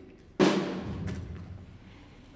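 A single loud drum stroke from the pit orchestra stands in for the stage gunshot. It hits sharply about half a second in, then rings away over a second or so.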